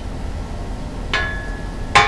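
A knock on a tubular steel ATV rack about a second in, leaving a brief steady metallic ring, then a sharp click at the end.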